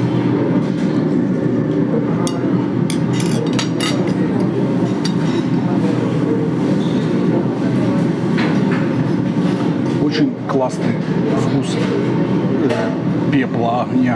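Steady din of a busy cafe with other diners' voices in the background, with scattered light clinks of metal forks against a plate.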